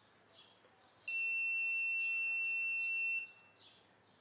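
The Arduino current monitor's transistor-driven buzzer gives one steady high beep of about two seconds, starting about a second in. It is the alarm for the measured AC current crossing the 0.2 amp threshold as another bulb is added to the load.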